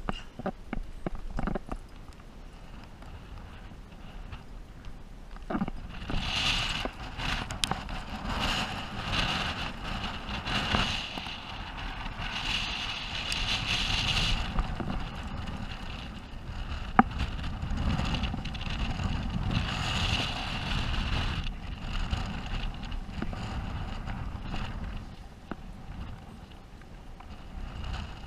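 Gusty wind buffeting the camera's microphone, a low rumble with a hiss that surges and drops in waves from about six seconds in. A run of light clicks comes at the start, and one sharp knock, hands or gear against the rock, comes past the middle.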